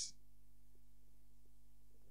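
Low, steady electrical hum from a microphone and PA system, with a few faint ticks.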